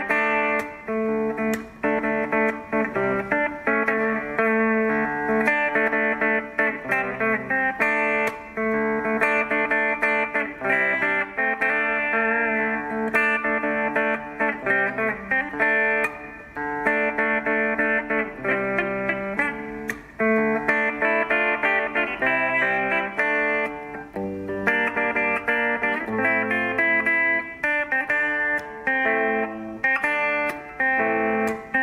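Electric guitar played solo, a continuous run of picked notes and chords.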